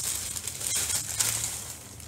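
Plastic wrapping crinkling and rustling as a handbag is unwrapped and pulled out of it.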